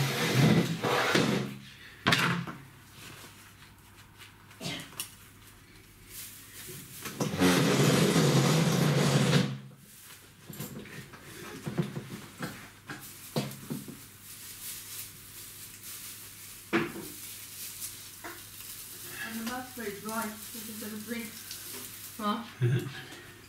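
Tinsel garland being handled, with one loud rustle lasting about two and a half seconds a third of the way in, and scattered light knocks and clicks.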